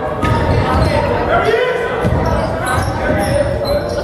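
Basketball bouncing on a hardwood court during live play, with shouting voices echoing through a large gym.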